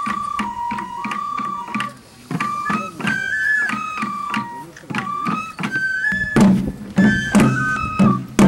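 Japanese folk music for a lion dance: a bamboo transverse flute plays a melody of held notes stepping up and down, over regular beats on the small drums worn by the lion dancers. The drum strokes get heavier and more emphatic near the end.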